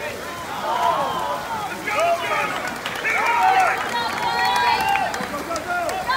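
Several people shouting and calling out over one another, with some splashing of water.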